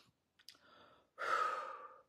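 A woman's audible breath, a sigh-like rush of air that starts a little past a second in and fades away, after a faint click.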